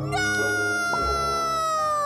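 A cartoon soundtrack note: one long, high, held tone sliding slowly downward, over soft background music.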